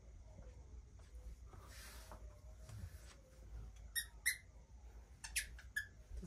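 Squeaky dog toy squeezed by hand: two short, high-pitched squeaks about four seconds in, then a few quicker squeaks near the end. The noise is sharp enough to startle the puppy.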